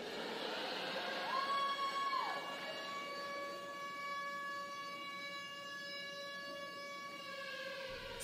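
A sustained electronic tone, rich in overtones, holds steady and slowly fades over about eight seconds as the opening of a song's backing track. A brief higher tone rises, holds and falls about a second in.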